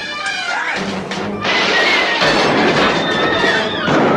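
Dramatic soundtrack music from a 1970s TV police drama's action scene. About a second and a half in, a sudden loud crash of noise comes in and carries on for a couple of seconds.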